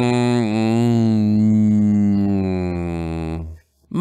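A man's voice holding a long, low, hummed "hmmm", a deliberating hum voiced in character. It wavers slightly in pitch, slowly trails off and stops about three and a half seconds in.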